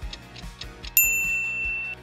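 A kitchen-timer ding sound effect: a single bright bell tone strikes about a second in and rings on until it cuts off. Before it, there is light background music with a clock-like ticking.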